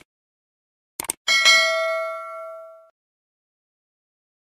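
Subscribe-button animation sound effect: mouse clicks, a quick double click about a second in, followed by a notification-bell ding that rings out and fades over about a second and a half.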